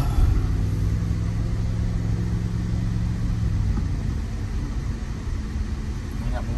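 Car engine and road noise heard from inside the cabin while driving, a steady low rumble with an even hum whose note changes about halfway through.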